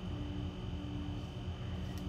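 Steady electrical hum with a faint, thin high-pitched whine over it.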